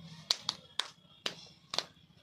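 A small boy's hand claps: about six sharp claps at an uneven beat.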